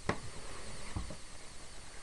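Two soft knocks at a small toy pool table, one just after the start and a lower one about a second in, over faint room noise.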